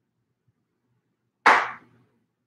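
A single short, sharp burst of noise about one and a half seconds in, sudden at the start and fading within half a second.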